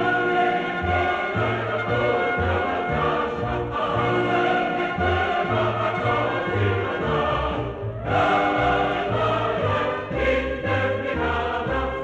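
Choral music: a choir singing with instrumental accompaniment, the phrase breaking off briefly about eight seconds in before the singing resumes.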